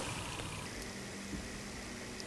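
Quiet room tone: a steady faint hiss with a low, even hum and no distinct event.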